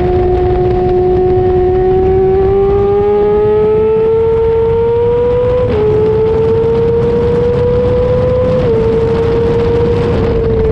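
2005 Honda CBR600RR's inline-four engine running hard at high revs, mixed with wind rush. The pitch holds, then climbs until an upshift about six seconds in drops it suddenly, climbs again and dips slightly near nine seconds.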